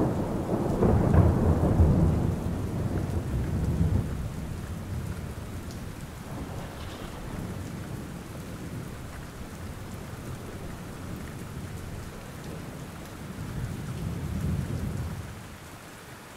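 Steady rain with rolling thunder: a deep rumble that is loudest over the first few seconds, dies away, and swells again near the end.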